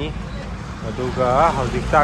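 Steady low rumble of street traffic, with a voice speaking in the second half.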